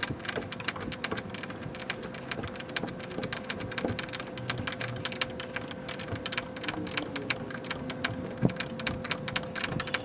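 Rapid, dense clicking of a ratchet wrench, sped up, as a collapsible rivet nut is drawn up and crushed into a steel tailgate, over a faint steady tone.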